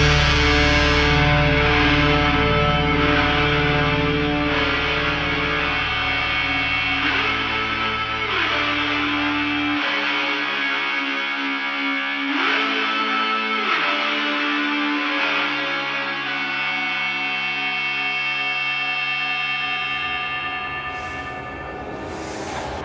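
Instrumental death-metal passage of sustained, effects-laden distorted electric guitar with echo and a few sliding notes. The deep bass drops out about ten seconds in, and the passage slowly quietens.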